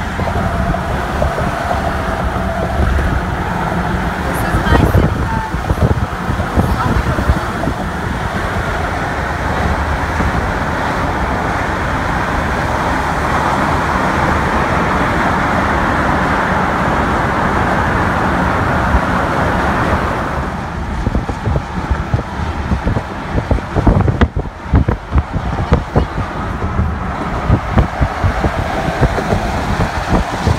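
Road and wind noise of a car driving on a highway: a steady rush that turns choppy and gusty about twenty seconds in.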